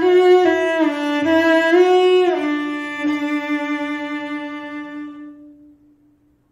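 Solo cello playing a short phrase of bowed notes, then holding one long final note that slowly fades out near the end, closing the piece.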